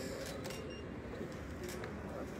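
Several faint camera shutter clicks from photographers capturing a posed certificate handover, over a steady low hall room noise.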